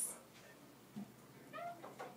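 A faint, short, high-pitched call lasting under half a second, about one and a half seconds in, preceded by a soft tap about a second in.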